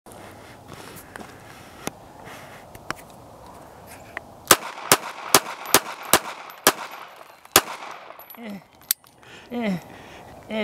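Ruger LCP .380 pocket pistol fired seven times in quick succession while held with a deliberately limp wrist, as a test of its stove-pipe malfunction. The shots come about half a second apart, the last a little later.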